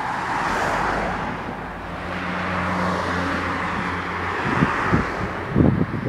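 A large motorhome driving past close by, its engine and tyre noise loudest in the first second, then a steady low engine hum. A few short knocks near the end.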